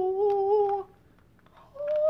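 A woman's voice humming two long held notes in imitation of a singing Mickey Mouse toy's tones: one note that stops a little under a second in, then after a short pause a higher one.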